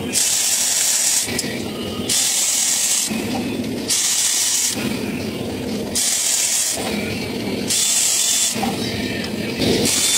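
Powered ratchet running in repeated bursts of about a second, hissing as it spins bolts out of the top of a Ford 4.9L straight-six engine.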